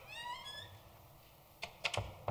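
A short squeak rising in pitch at the start, then a few sharp knocks near the end, which are the loudest sounds.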